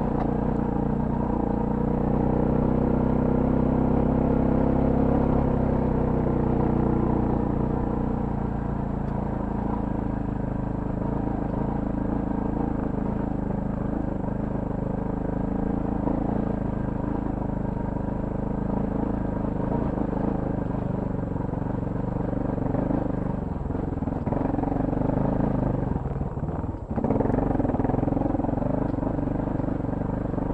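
Adventure motorcycle engine running as the bike climbs a rocky dirt trail, its pitch rising and falling with the throttle. Near the end it briefly drops away, then picks up again.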